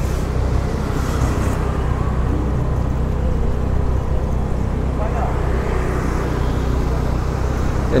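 Steady night-time street traffic noise, a low even hum and rumble of engines with motor scooters on the road.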